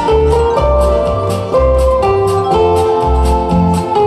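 Acoustic guitar strummed in a steady rhythm, about four strokes a second, with a sustained melody line over it that steps from note to note.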